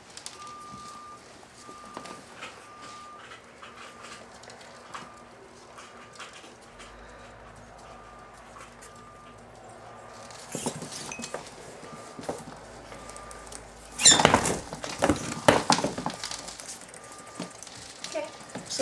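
Pet rats scrabbling on a wooden floor, with light pattering and small clicks throughout. About fourteen seconds in comes a brief, loud scuffle between the rats lasting about two seconds: a dominance tussle during a stressed introduction that the owner judges harmless.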